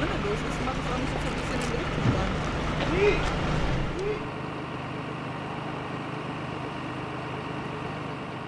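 Emergency vehicle engines idling with a steady low hum, with a few short snatches of voices over it. About halfway through the sound drops to a quieter, even rumble of idling fire engines.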